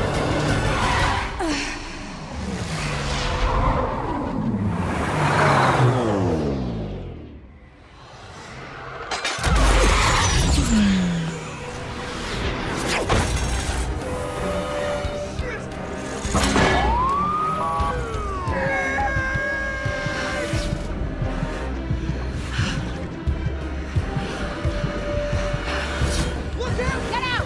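Action-film car-chase soundtrack: car engines passing with falling pitch, tyre squeals, a sudden loud crash about nine seconds in, and police sirens in the later part, all under a music score.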